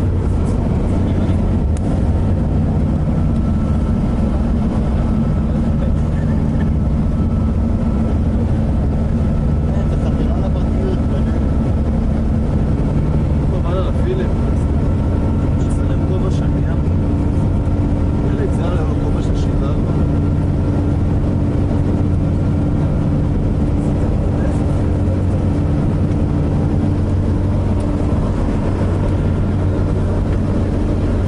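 Steady drone of a coach bus engine and road noise heard from inside the passenger cabin.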